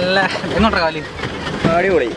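People talking in short phrases over a low, steady rumble.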